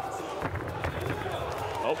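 Arena fight crowd: a steady din of many voices, with a few faint thuds.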